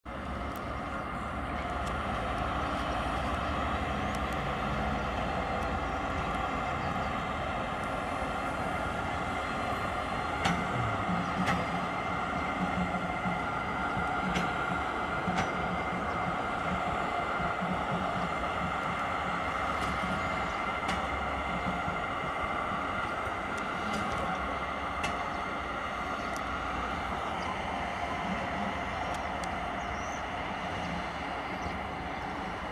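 Pesa Gama SU160 diesel locomotive running steadily with a droning hum as it shunts slowly, with a few sharp clicks along the way.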